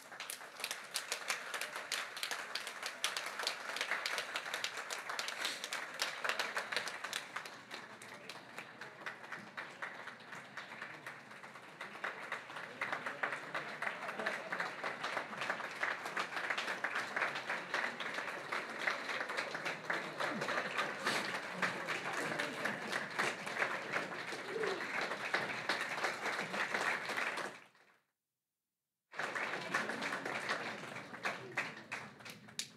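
An audience applauding steadily, with voices mixed in. Near the end the sound cuts out to silence for about a second, then the applause resumes.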